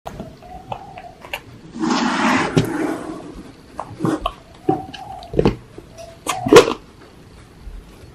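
Small hard-shelled chocolate candies rattling in a clear plastic jar for about a second. Then come scattered clicks and knocks as the jar and its plastic lid are handled and the lid is pulled off, the sharpest click a little before the end.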